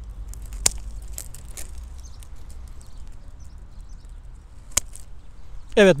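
Hand pruning shears snipping through woody rose canes: two sharp snips, one under a second in and one near five seconds, with a few faint ticks between.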